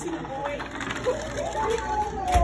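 Young people's voices in a large room, with one drawn-out vocal exclamation that rises and falls in pitch, starting about a second and a half in.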